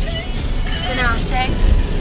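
Car cabin while driving: a steady low rumble of engine and road, with a pop song on the car radio and a voice briefly heard over it.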